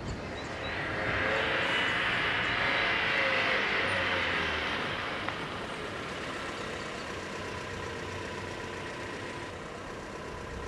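A car driving by: engine and tyre noise swell over the first second, stay loudest for a few seconds, then ease off to a steadier, lower running sound.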